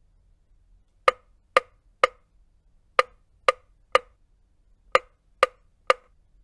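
Sharp, identical metronome-like clicks, nine in all in three groups of three: about half a second apart within each group, with a gap before the next group so that each group starts about two seconds after the last. They beat out the neonatal resuscitation rhythm of three chest compressions and one breath every two seconds (90 compressions and 30 breaths a minute).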